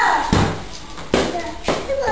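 Three short dull knocks about half a second apart, after a brief falling voice at the start.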